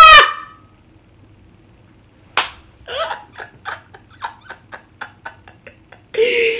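A woman's loud laugh ending just after the start, then a pause, then a sharp gasp and breathless, wheezing laughter in short breathy pulses, about four a second, growing fainter toward the end.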